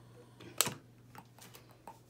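Small clicks and taps of a long utility lighter and a glass jar candle being handled as the candle is lit: one sharp click about half a second in, then a few faint ticks.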